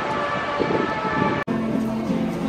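Street noise with a steady, held high tone. About a second and a half in there is an abrupt cut to acoustic guitar played by a busker, echoing in a tiled underground passage.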